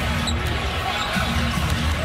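A basketball being dribbled on a hardwood court, over the steady noise of an arena crowd.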